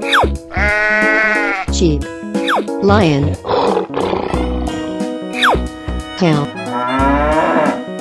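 Children's cartoon background music with animal sound effects laid over it: a long bleat near the start, a rough lion's roar about halfway, and further animal calls later on. A quick falling whistle-like tone recurs between the calls, about four times.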